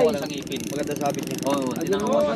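Ultralight spinning reel clicking rapidly and evenly while a hooked fish pulls against the sharply bent rod.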